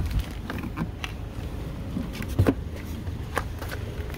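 A person climbing out of a car's driver's seat through the open door: scattered creaks, knocks and handling clicks, the strongest knock about two and a half seconds in, over a low steady rumble.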